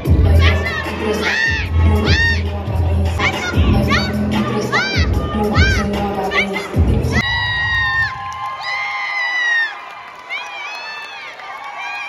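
Crowd cheering and screaming with high-pitched whoops over loud, bass-heavy dance music during a dance team's routine; the music cuts out about seven seconds in and the cheering carries on.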